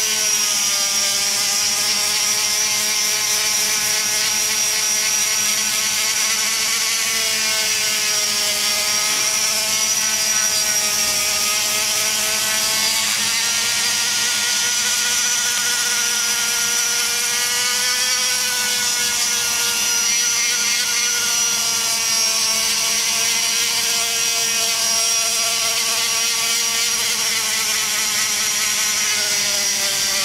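Die grinder spinning a cartridge sanding roll inside the aluminium exhaust port of an LS cylinder head, erasing earlier grinding scratches. It runs steadily with a high whine, its pitch wandering slightly up and down throughout.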